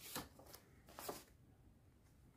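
Faint rustling of paper slips and cards handled by hand as one slip is drawn from a stack: two soft rustles, one just after the start and one about a second in.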